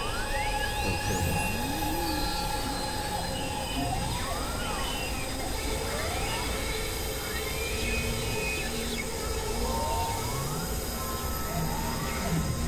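Experimental electronic noise music: layered held tones and drones over a dense, noisy low rumble, crossed by repeated rising pitch sweeps. One sweep climbs very high in the first second and a half, and shorter rising glides follow at about four, six and ten seconds in.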